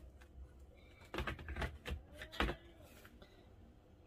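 A few light clicks and knocks of a Milwaukee M18 5.0Ah battery pack being handled, mostly between one and two and a half seconds in.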